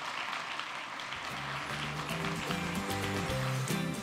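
Audience applauding, with music starting about a second in and playing over it.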